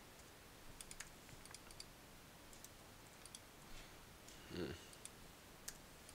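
Faint clicks of a computer mouse and keyboard, several in quick succession about a second in and a sharper single click near the end, over near silence.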